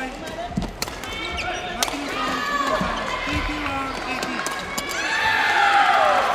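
Badminton rally: sharp racket hits on the shuttlecock and footfalls on the court floor, with voices in the hall that swell louder near the end.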